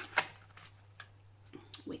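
Pages of a small ring binder being turned by hand, plastic pockets and card rustling, with a sharp click about a quarter of a second in and a lighter click about a second in.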